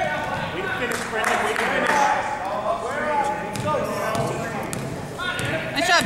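A basketball bouncing on a hardwood gym floor as a player dribbles it, amid the voices of spectators and players.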